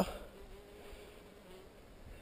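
A flying insect buzzing faintly: a thin, steady drone lasting about a second.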